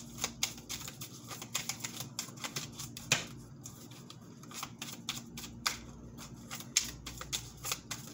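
A deck of tarot cards shuffled by hand to draw a clarifier card: an irregular run of quick card clicks and flicks.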